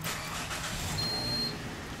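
Car noise swelling and then fading, with one high electronic beep about half a second long about a second in, typical of a fuel pump's keypad prompt.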